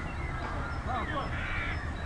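Distant voices of players shouting and calling across an outdoor football pitch: several short, rising-and-falling calls over a steady low rumble.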